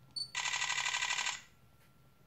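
Panasonic Lumix FZ300 bridge camera giving a short autofocus-confirmation beep, then firing a burst of shutter clicks at about a dozen a second for about a second.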